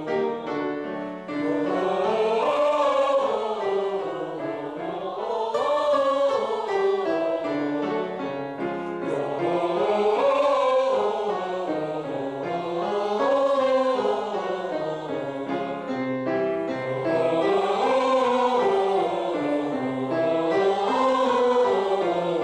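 A group of voices sings a vocal warm-up exercise with piano accompaniment. A stepwise pattern climbs and falls, and it repeats about every three to four seconds.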